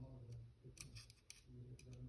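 Faint small clicks, about four in quick succession, from tweezers and the plastic frame of an opened Samsung Galaxy A02s as its earpiece is fitted back in place. A low steady hum runs underneath.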